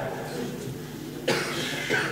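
A single short cough about a second in, over a faint steady hall background, with a brief voice near the end.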